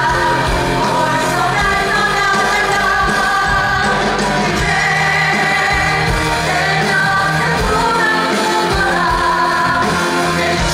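A musical-theatre cast of male and female voices sings a song live into stage microphones, backed by a band through the theatre's sound system. The music is loud and even throughout.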